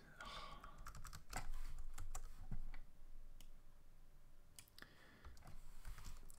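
Computer keyboard keys pressed in a sparse, irregular run of clicks, a handful of keystrokes spread over several seconds.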